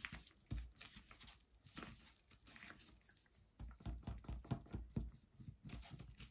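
Wooden stirring stick scraping and stirring thick acrylic paint and pouring medium in a plastic cup: faint, irregular wet scrapes and clicks with soft bumps, getting busier in the second half.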